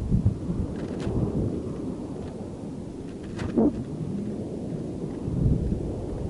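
Low, steady rumble of air buffeting a weather-balloon camera payload high in the stratosphere, with a few knocks and creaks from the swaying payload. The strongest knock comes about halfway through.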